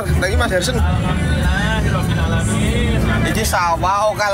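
Steady low rumble of a moving bus's engine and road noise, heard from inside the cabin, under voices and music.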